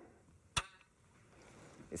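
Trigger of a Lobaev DXL-3 bolt-action sniper rifle pulled with no shot: a single sharp click about half a second in. The trigger is described as really short and smooth.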